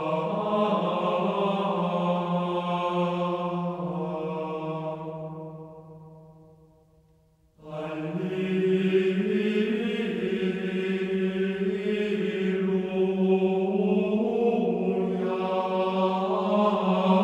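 Sung chant-like vocal music with long held notes. It fades out about five to seven seconds in, and a new passage begins abruptly about seven and a half seconds in.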